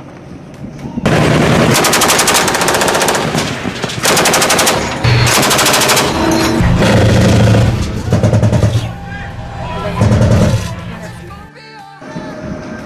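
Automatic gunfire in several long, rapid bursts, loud, with short pauses between them.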